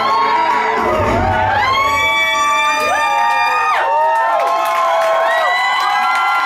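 An audience cheering and whooping, many voices rising and falling in pitch, while music with a bass beat stops in the first second or two.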